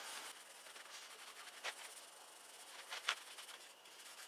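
Hand rubbing on a chrome bicycle mudguard, trailing off within the first moment, then a quiet hiss broken by two light taps about a second and a half apart.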